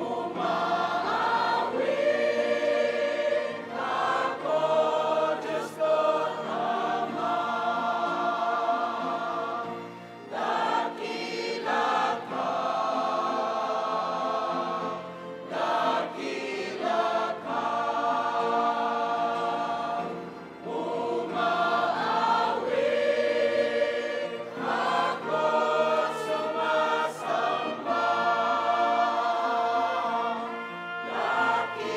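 Mixed church choir of men's and women's voices singing a hymn in long held phrases, with short breaks between lines.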